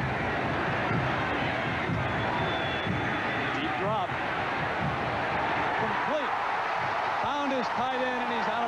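Stadium crowd noise: a steady roar of many voices from a large football crowd, with faint voices standing out now and then.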